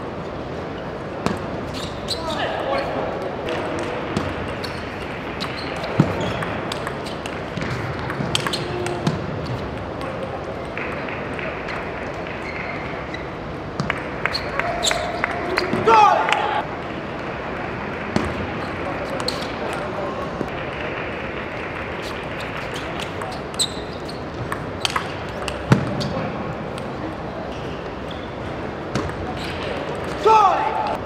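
Table tennis ball clicking sharply off bats and the table in a large hall, in bursts of rallies. A voice shouts briefly about halfway through.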